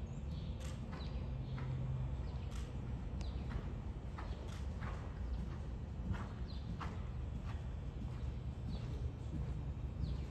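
Horse cantering on soft arena footing: its hoofbeats come as irregular soft knocks about once or twice a second, over a steady low rumble.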